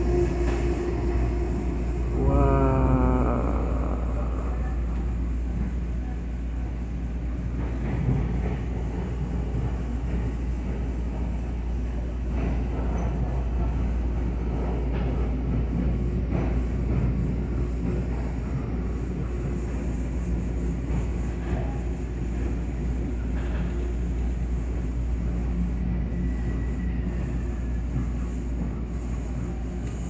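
Steady low rumble of a commuter train's railcar running, heard from inside the passenger cabin as it passes along a station platform. A person gives a short rising call about two to three seconds in, and a faint falling squeal comes near the end.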